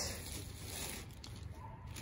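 Faint rustling of fabric as a pile of doll clothes is shifted by hand, over low steady background noise.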